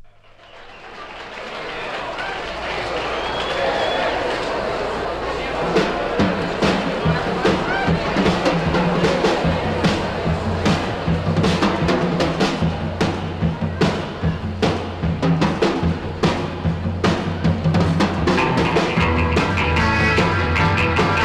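A 1960s beat/surf-rock band recording starting a new track. The sound fades up out of silence over the first two seconds, a bass line enters soon after, and a drum kit comes in with steady, regular hits about six seconds in.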